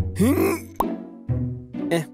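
Cartoon transition sound effect: a quick rising whistle-like glide with a hiss, ending in a sharp pop, over background music. A short grunted 'eh' follows.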